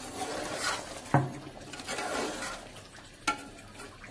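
Steel spoon stirring a thin, watery curry in a metal pot, with liquid swishing and two sharp clinks of the spoon against the pot, about a second in and again after three seconds.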